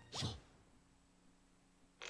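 A quick cartoon sound effect about a quarter second in: a short swish that falls fast in pitch, like a zip, as a small tool tweaks the engine's funnel-shaped intake. Near silence follows.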